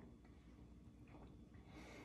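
Near silence as a person gulps a drink from a shaker bottle, with one faint breath out through the nose near the end.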